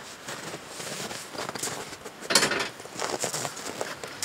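Rustling and scuffing from a person moving about close by, with one louder rustle a little past halfway.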